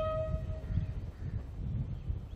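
A bugle call ends on a long held note that dies away within the first half second. After it comes a gusty low rumble of wind on the microphone.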